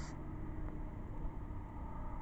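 Faint, steady rumble of distant vehicle engines, with a low hum that fades out near the end.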